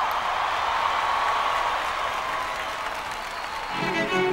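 Large audience applauding, with a faint steady high tone under it. Just before the end, music with bowed strings begins.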